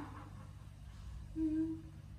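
A woman's short closed-mouth moan, a single 'mm' lasting about half a second, about one and a half seconds in, over a steady low hum.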